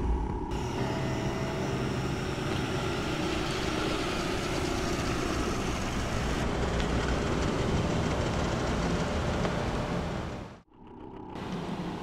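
Steady rumble and hiss of a car, with no distinct events, cutting off abruptly about ten and a half seconds in.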